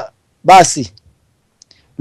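A man's voice says one short word with a falling pitch, then a pause broken only by a few faint clicks.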